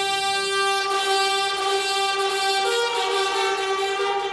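Brass ensemble playing long, held chords. The chord changes about three seconds in.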